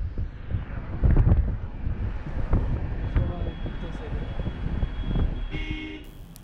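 Wind buffeting the microphone, with road rumble, from a car moving along a highway; the gusts come and go, strongest about a second in. A brief pitched sound sounds near the end.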